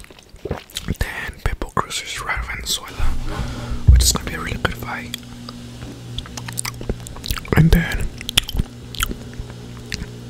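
Eating close to the microphone: irregular bites and chewing clicks. A steady low hum comes in about three seconds in.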